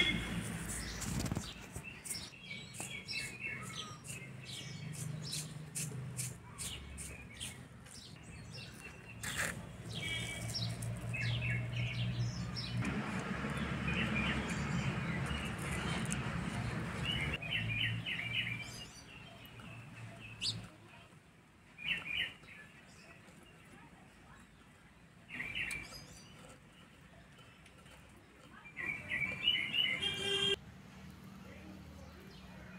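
Small birds chirping in repeated short clusters, over dry crackling and rustling as dried poppy seed pods are broken open and their seeds shaken out.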